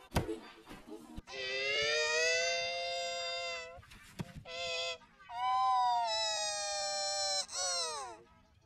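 Effect-processed, pitch-shifted audio. A click at the start is followed by long wail-like sustained tones in three stretches, each sagging slowly in pitch, and a quick downward sweep near the end.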